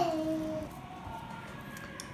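A child's voice briefly holds a sung note in the background, dying away within the first second, then quiet room tone.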